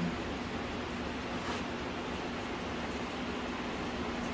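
Steady room hum and hiss, with one faint click about a second and a half in.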